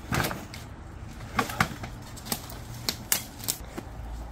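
Footsteps on a plastic garden chair and then on dry dead branches. A heavy step lands on the chair at the start, then about six sharp cracks and snaps follow as twigs break underfoot.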